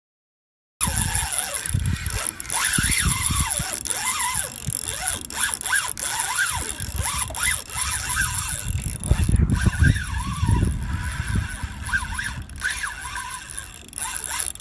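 Wind rumbling on a phone microphone, overlaid by a string of short, high squeals that rise and fall in pitch.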